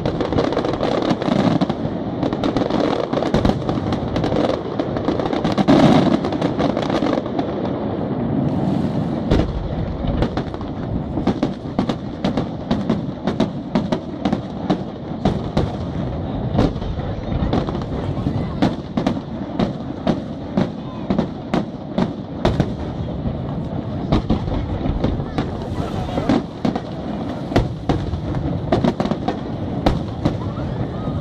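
Aerial fireworks display: a continuous barrage of shell bursts. A dense rumble fills the first several seconds, then many sharp cracks follow in quick succession.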